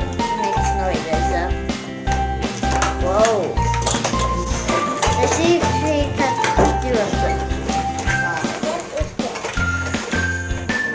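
Background music with a steady, repeating bass beat and a simple stepping melody.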